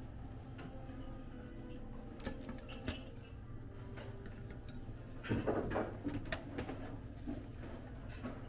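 Ambience of a breakfast buffet room: a steady low hum with scattered clinks and knocks of serving ware, and a louder clatter of several knocks a little past the middle.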